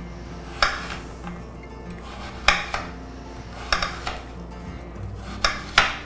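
Knife cutting peeled jicama on a glass cutting board: about six sharp knocks of the blade striking the glass, irregularly spaced.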